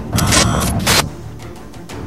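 Background music, with two short, bright bursts of noise in the first second.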